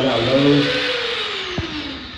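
Corded Dremel rotary tool fitted with a small sanding bit, given a quick burst of power: a high whine that falls steadily in pitch as the tool spins down.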